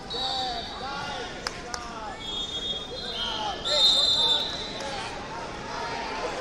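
Sports referee whistles blown several times across a hall of wrestling mats, each a steady shrill tone at a slightly different pitch. The loudest blast comes about four seconds in. Shouting voices run underneath, with two sharp knocks about a second and a half in.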